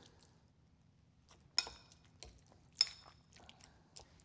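A metal fork clinking twice against a glass mixing bowl, about a second and a half apart, each clink ringing briefly, as mashed butternut squash is mixed with ricotta and cream.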